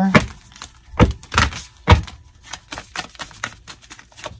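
A deck of oracle cards being shuffled by hand: sharp card slaps and clicks, three louder ones in the first two seconds, then a run of quicker, lighter clicks.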